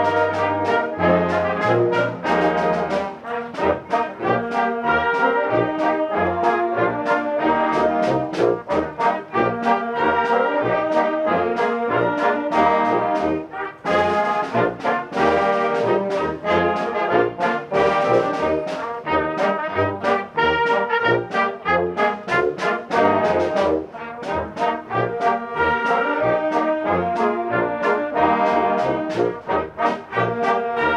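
Concert band playing, with the brass to the fore in short, detached notes. Low bass notes sound near the start, and the music breaks briefly between phrases about 14 and 24 seconds in.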